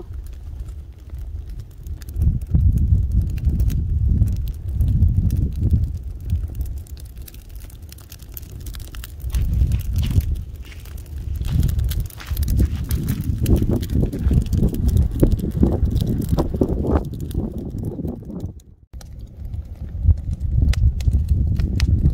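A campfire of dry brush and sticks burning with scattered crackles, under loud rumbling wind noise on the microphone that rises and falls in gusts. The sound cuts out briefly near the end.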